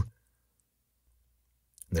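Near silence: a pause in a man's narration, his voice ending just after the start and coming back near the end, with a faint click just before it returns.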